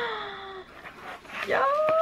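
A woman's high-pitched, drawn-out excited exclamations: a long falling 'ohh', then, after a short lull, a rising squeal of 'ja'.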